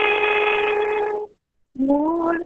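A woman singing, holding one long steady note that stops a little over a second in. After a short pause she starts the next phrase on a rising note near the end.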